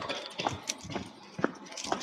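Footsteps on a gravel and dirt path, short irregular steps about two a second, as a person walks a dog on a lead.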